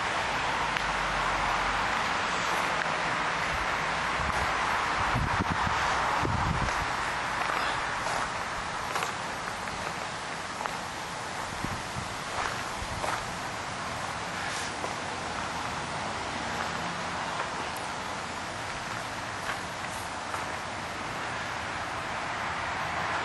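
Steady outdoor background hiss, with a few faint clicks scattered through it.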